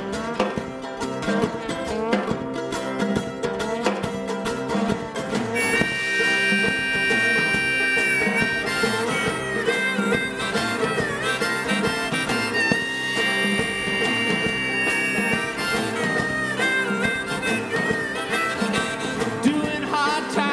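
Acoustic string band with guitars, banjo and upright bass playing an up-tempo old-time instrumental intro. A harmonica comes in about six seconds in, playing long held notes with bends over the strings.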